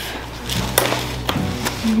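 A few sharp knocks of packaged groceries being handled and set down on a kitchen counter, over a low steady hum.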